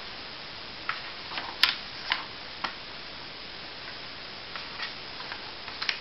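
Paper textbook pages being handled and turned: a handful of short, irregular paper rustles and taps, the sharpest about a second and a half in, with a few softer ones near the end.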